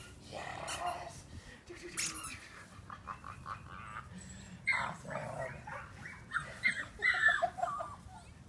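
An eight-week-old Australian Shepherd puppy making short, high-pitched vocal sounds while it plays tug with a toy, most of them in the second half.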